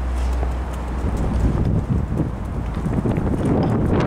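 Wind buffeting the camcorder's microphone: a steady low rumble that turns gusty and choppy about a second and a half in.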